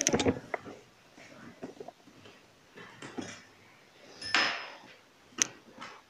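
Light handling noise of fabric and a cloth tape measure being laid out. There are a few small clicks and knocks at the start, a brief rustle about four seconds in, and one sharp click near the end.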